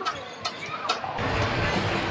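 Sports-hall background noise with distant voices: a few sharp clicks or knocks, then from about a second in a sudden, louder, steady rumbling din.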